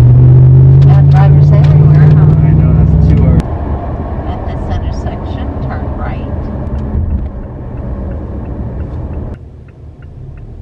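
Car running on the road, heard from inside the cabin: a loud low engine drone that rises slightly in pitch for the first three seconds or so, then breaks off suddenly to a quieter low road rumble.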